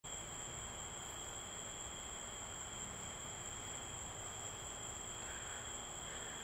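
Steady night insect chorus: a continuous high trill that holds one pitch without a break, over faint background hiss.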